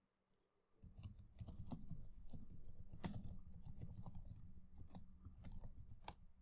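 Computer keyboard typing: a fast, uneven run of faint keystrokes that starts just under a second in.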